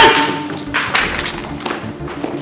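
Dramatic film sound effects over music: a loud hit with a short ringing tone right at the start, then a few lighter thuds as men are struck down and fall to the floor.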